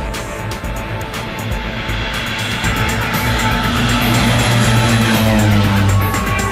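Propeller airplane taking off, its engine growing louder over the second half as it comes down the runway, under background music.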